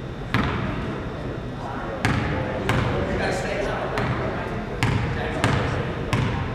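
A basketball bounced on a hardwood gym floor, about six sharp bounces spaced unevenly, over voices murmuring in the hall.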